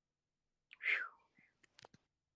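A brief breathy, whisper-like sound from a person about a second in, then a few faint clicks near the end.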